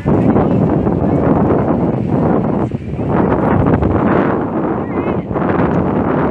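Wind blowing on the microphone, loud and continuous, with a couple of brief dips.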